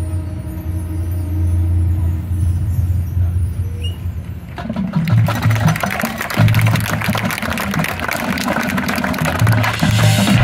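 Marching show band playing: a low note is held for the first few seconds, then about halfway through the full band comes in loudly with drum hits and pulsing low brass.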